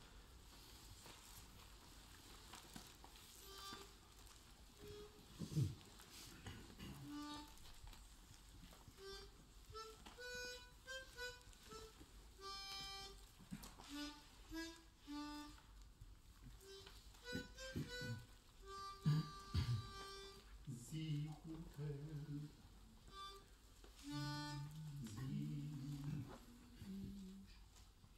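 A quiet pause between choral pieces, with short, soft pitched notes at different pitches sounding here and there as the starting notes are given to a men's choir. Low hummed notes near the end.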